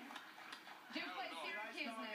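Speech only: people talking on a television broadcast, picked up off the TV's speaker.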